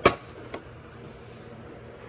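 Plastic air-filter box cover on a Ford Explorer being unclipped: a sharp click right at the start and a fainter click about half a second later.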